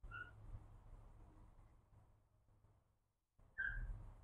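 Quiet outdoor background with a faint low rumble, while a slingshot is drawn and held at aim. A short, faint high chirp comes at the very start and again near the end.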